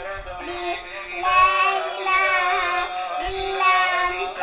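A young girl singing a melody, holding long notes that waver in pitch.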